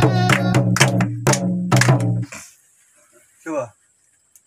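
Children singing a Nepali folk song together over music with a drum beat; singing and music stop abruptly a little over two seconds in. A single short vocal sound follows in the quiet.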